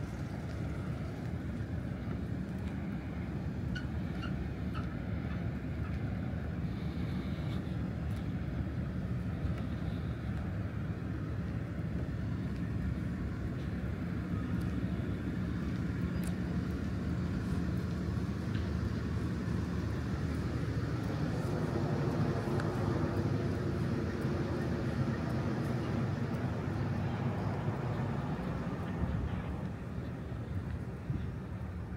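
Steady low engine rumble of vehicles, with an engine hum that grows stronger for a few seconds in the second half.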